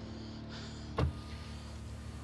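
A steady low hum inside a car, with one short, sharp knock about a second in.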